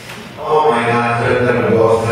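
A person's voice at a podium microphone, starting about half a second in with a long vowel held at a steady pitch, like a drawn-out 'ehh'.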